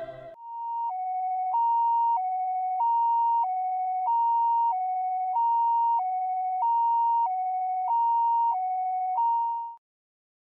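Two-tone hi-lo ambulance siren, switching back and forth between a high and a low note about every two-thirds of a second. It cuts off just before the end.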